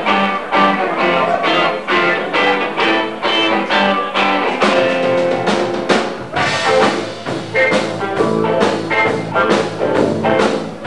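Live rock band playing: electric guitar over a drum kit with a steady beat.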